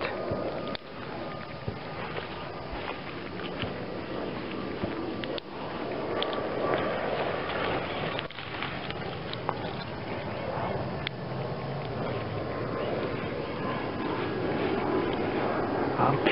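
Steady outdoor background noise with a faint hum, broken by a few small clicks and rustles.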